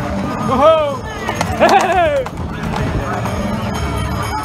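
Two loud, drawn-out shouts that rise and fall in pitch, about half a second in and again near the middle, calls of the kind onlookers give to cattle running past, over a steady din of the crowd in the street.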